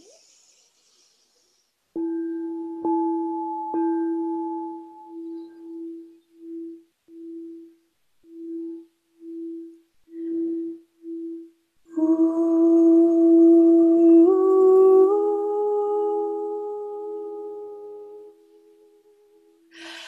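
A quartz crystal singing bowl is struck about two seconds in, with a couple more light taps, then sung by circling the mallet around its rim: one steady low tone that pulses on and off for several seconds. About twelve seconds in, a woman's humming joins in harmony with the bowl, stepping up in pitch twice, before both fade near the end.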